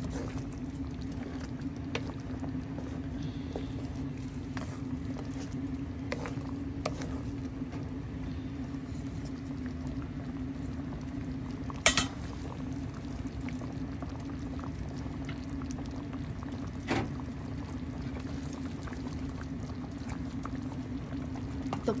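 Cream stew simmering and bubbling in a pan over a steady low hum, with a sharp click about 12 seconds in and another about 17 seconds in.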